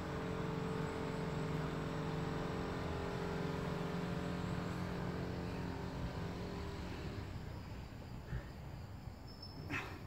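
A steady low motor hum made of several level tones, fading away about seven seconds in. A single sharp knock comes near the end.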